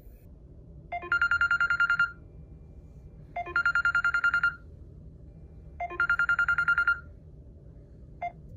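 Smartphone alarm going off: three bursts of rapid high beeping, each lasting about a second, with a pause of a little over a second between them.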